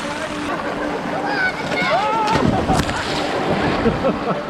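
Heavy rain falling on a lake's surface, a steady hiss. Over it come the calls and chatter of people swimming, busiest in the middle.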